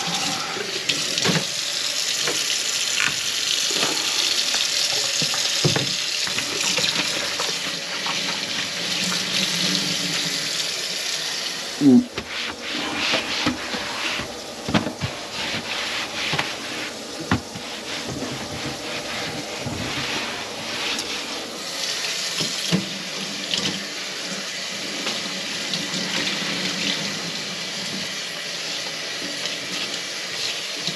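Kitchen tap running steadily into the sink, the water draining away as the unblocked drain is tested. About 12 s in there is a sharp knock, then irregular splashing and clatter over the running water.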